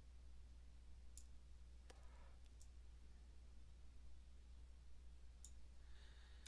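Near silence with a few faint, separate clicks of a computer mouse as on-screen icons are dragged into place, over a low steady hum.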